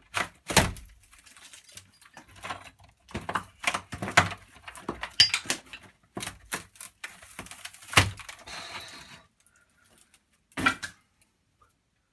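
Old wall boarding being prised and pulled off by hand: irregular cracks, knocks and scraping, with a last sharp crack near the end.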